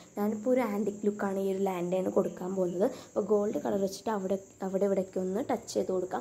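A woman speaking in continuous short phrases.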